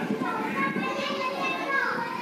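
Children's voices chattering, high-pitched and indistinct.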